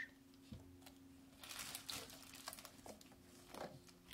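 Faint handling sounds of a silicone stretch lid being pulled over the rim of an enamel bowl: soft rubbing and scattered small clicks, with a brief crinkly rustle about one and a half seconds in, over a faint steady hum.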